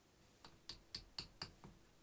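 Small hammer tapping lightly, six quick taps, on a thin sheet-metal strip bent over a four-jaw lathe chuck jaw, easing the metal at the bend.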